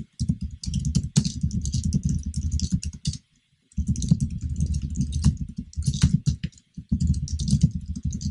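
Fast typing on a computer keyboard: a quick, continuous run of keystrokes with one short pause near the middle.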